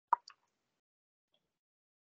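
A single short, sharp pop followed a moment later by a fainter click, near the start of an otherwise silent line.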